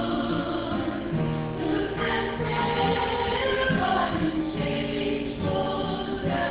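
A mixed choir of men and women singing a hymn together in sustained, held notes.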